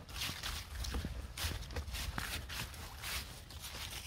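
Footsteps shuffling and rustling through a thick layer of fallen autumn leaves, about two steps a second, with a low rumble underneath.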